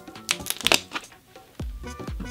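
Stiff cardboard of a gatefold record sleeve crackling in a few quick snaps as it is opened out, over background music whose low beat comes in about one and a half seconds in.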